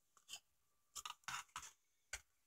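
Faint handling of cut paperboard candy-box pieces: a few soft rustles and light taps as the card is moved and laid down.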